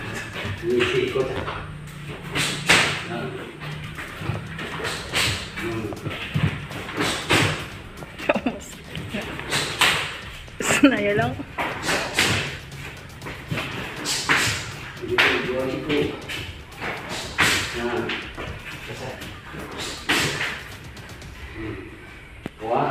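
Repeated sharp slaps and thuds every second or two from taekwondo jumping double roundhouse kicks and landings on a concrete floor, echoing in a bare concrete room, with voices in between.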